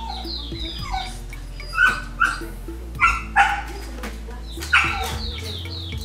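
A dog barking about five times in quick, uneven succession, over background music and the repeated high chirps of birds.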